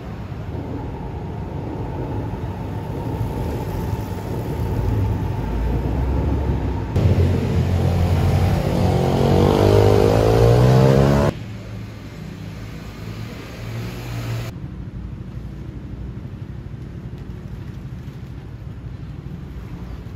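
A road vehicle passing on the street, growing louder for about eleven seconds and then cutting off suddenly, followed by a lower steady street background.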